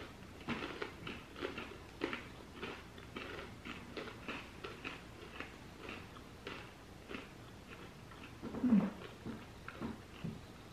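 Crunchy candy-coated pretzels being chewed with closed mouths, a crisp crunch about every half second. A short hum of the voice near the end.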